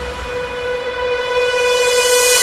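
Breakdown in an electronic dance track: the beat and bass drop out, leaving a single held synthesizer note, bright with overtones, over a thin hiss. The music swells again toward the end.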